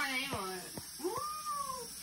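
A domestic cat meowing once, about a second in: one drawn-out call that rises and then falls in pitch.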